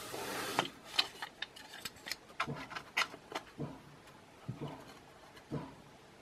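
A small wooden box and tiny metal hinges being handled by hand: a brief rub, then scattered light clicks and taps.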